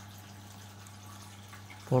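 A steady low hum under a faint even hiss, with nothing else happening.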